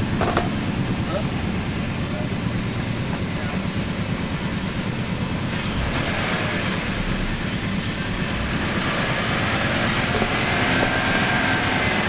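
Air-powered vacuum coolant exchanger running steadily with a constant rushing hiss, as it draws the old coolant out of the engine's cooling system under vacuum.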